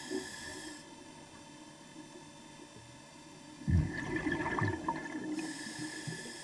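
Scuba diver breathing through a regulator underwater. After a quiet stretch, a low gurgling rush of exhaled bubbles comes about two-thirds of the way in, and a hissing inhalation follows near the end.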